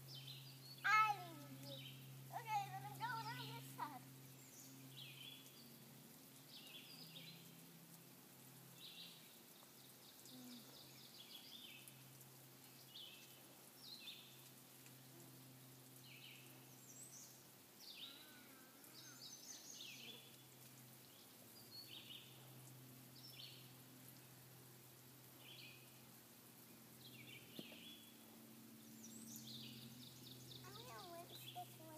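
Songbirds chirping on and off throughout, with a young child's high-pitched squealing voice in the first few seconds, loudest about a second in. A faint steady low hum runs underneath.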